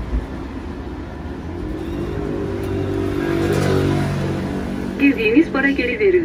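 A motor vehicle's engine passing close by on the street, swelling to its loudest about three and a half seconds in and then fading. A person's voice comes in near the end.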